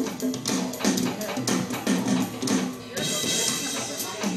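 A group jam played on tablet music apps through small table speakers: a repeating low note pattern, two to three notes a second, over scattered percussive taps, with a hissy swell near the end.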